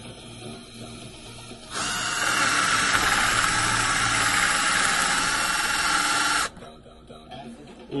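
Red Panzer cordless drill spinning a hinge-boring bit into a wooden batten, running steadily for about five seconds from near two seconds in, then stopping suddenly. It is boring a recess so that a bolt head will sit buried in the wood.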